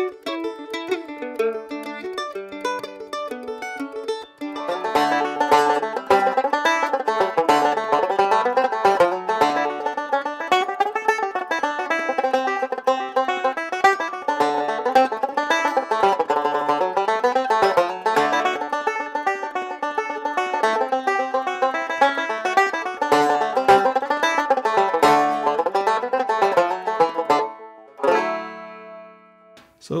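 Mandolin picking the last bars of an Irish jig for the first four seconds, then a banjo picking a fast Irish reel: a custom Nechville banjo with an Irish tenor-size pot and a five-string-length neck, tuned down a tone and capoed at the second fret. Near the end the playing stops and a last note rings out and fades.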